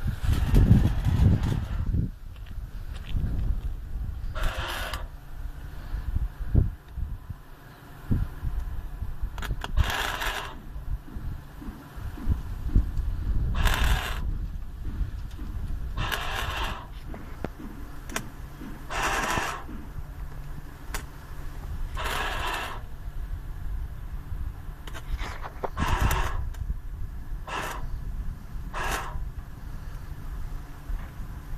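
Arc welder laying short tack welds on the sheet-metal bed of a pickup truck: about nine separate bursts of arc crackle, each half a second to a second long, with pauses of a few seconds between them. A steady low rumble runs underneath, loudest in the first two seconds.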